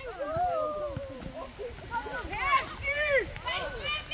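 Children's voices calling out during play on the court, several short shouts and calls that sound more distant than a nearby speaker.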